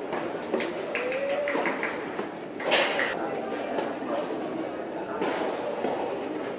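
Tennis racket strikes on the ball during a doubles rally: several sharp hits a second or more apart, the loudest near the middle, over the chatter of onlookers.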